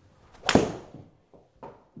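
Takomo 101U driving iron striking a golf ball off a hitting mat: one sharp crack about half a second in, ringing off briefly in the small room. A solid strike, giving the longest shot of the session.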